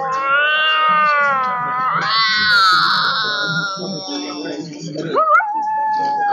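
A woman's voice imitating a cat: two long, wavering yowling meows of about two seconds each, the second starting high and sliding down. Near the end a rising call levels off into a held note.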